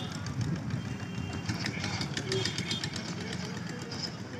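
Street hubbub of waiting traffic: a murmur of many voices over idling motorcycle and auto-rickshaw engines, with scattered small clicks and rattles.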